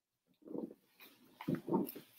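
Rustling and muffled handling noise of a satin vestment being pulled on and settled at the neck. There are two short bursts, the first about half a second in and a louder one near the end.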